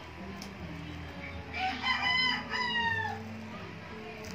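One loud bird call, a few linked notes with the last one falling, lasting about a second and a half from a little past the middle. A low steady hum runs under it.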